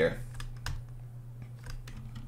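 A few scattered, irregular computer keyboard keystrokes over a low steady hum, made while the lecture slides are being brought up on screen.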